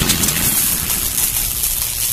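End-screen outro sound effect: a steady, fairly loud rumbling hiss with no melody or beat, the tail of a big hit that closes the outro music.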